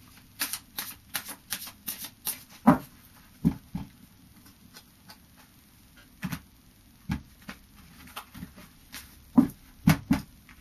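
A deck of Fairy Oracle cards being shuffled and handled by hand: a quick run of soft card clicks and flicks in the first few seconds, then scattered single snaps and taps.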